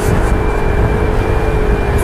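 Yamaha Mio i 125 scooter's single-cylinder four-stroke engine running at a steady cruise, a steady hum over heavy wind and road rumble on the handlebar microphone.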